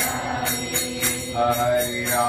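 A man singing a devotional chant into a microphone, holding long notes, over a steady metallic beat of small hand cymbals striking about three to four times a second.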